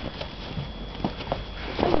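A few short, scattered crunches of packed snow being scooped off a car and thrown, with a shout starting right at the end.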